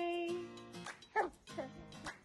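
A baby cooing: a long held coo that fades just after the start, then short squeaky calls that slide up and down in pitch, over background music.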